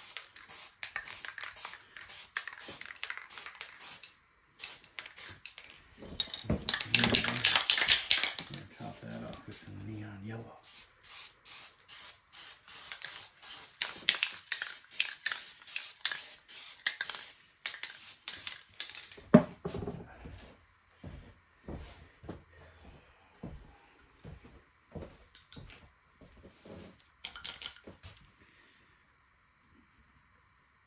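Aerosol spray paint can sprayed in rapid short bursts of hiss, with a longer, louder stretch of spraying about six to ten seconds in. The bursts thin out and grow fainter after about twenty seconds.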